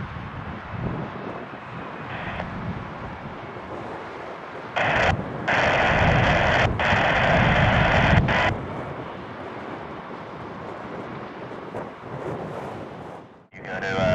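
Low, steady rumble of F/A-18F Super Hornet jet engines at taxi, mixed with wind on the microphone. About five seconds in, a louder hissing burst of radio static switches on abruptly and cuts off about three seconds later.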